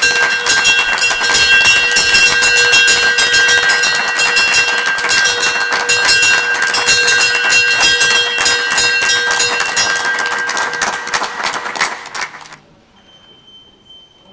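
Brass stock-exchange opening bell rung by hand, struck rapidly and continuously so its ringing tones stay up for about twelve seconds, then it stops.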